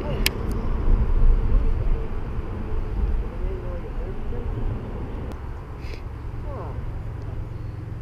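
Low rumbling noise on a chest-mounted camera's microphone while an angler winds in a cast on a baitcasting reel, slowly fading, with one sharp click about a quarter second in.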